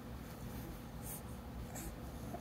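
Soft rustling of fabric as a baby shifts and turns over on a couch cushion, with two brief scratchy brushes, one about a second in and one near the end.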